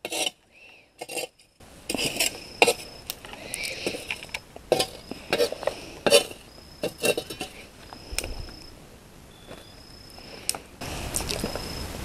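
Irregular sharp clicks, knocks and clinks of objects being handled, with a faint short high chirp recurring every second or so.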